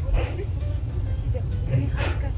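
Steady low rumble of the Mt. Takao funicular cable car running through a tunnel, heard from inside the car, under background music and faint voices.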